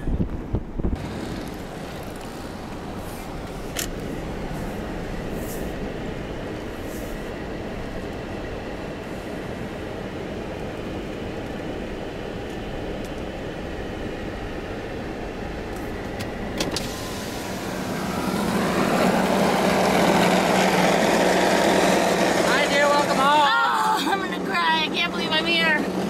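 Steady road and engine noise inside a car's cabin as it drives slowly along a snow-covered street. About two-thirds of the way through it grows louder and more open, with a steady engine hum, and voices come in near the end.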